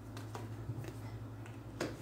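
Tarot cards being handled and one dealt onto a mat: a few faint card flicks and taps, the loudest near the end as the card is laid down, over a low steady hum.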